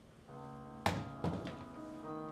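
Chamber orchestra of strings with keyboard opening a piece on a held chord. Just under a second in, a sharp knock cuts through, then a weaker second one.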